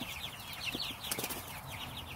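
Cornish Cross broiler chickens, about four and a half weeks old, peeping: a steady run of short, falling high-pitched notes, several a second.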